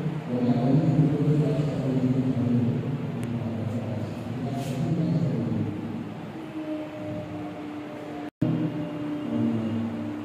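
Muffled music with long held notes. The sound cuts out for an instant about eight seconds in.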